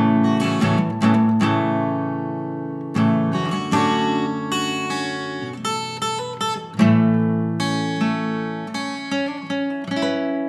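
Acoustic guitar music with no vocals: chords strummed and left to ring out and fade, a new strum every second or few, with a change of chord about three seconds in and another near seven seconds.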